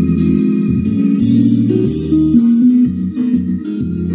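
Tenor saxophone playing a melody whose notes step up and down, over a backing track with guitar.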